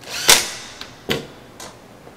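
A cordless drill-driver runs briefly, driving a screw home in the light bar's housing, and ends in a sharp click. Two lighter knocks follow, about a second and a second and a half in.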